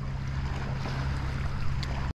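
Steady low motor hum from a small aluminium fishing boat, with wind and water noise over it and a faint tick near the end.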